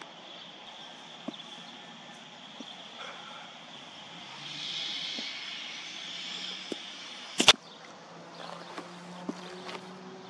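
A cricket bat striking the ball: one sharp crack about seven seconds in. Behind it, insects chirr steadily and high.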